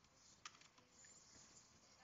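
Near silence, with one faint computer key tap about half a second in.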